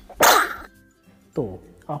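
A young woman sneezing once: a single sharp, explosive burst shortly after the start.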